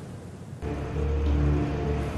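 Motor vehicle engine running steadily with a low, even hum, coming in suddenly about half a second in.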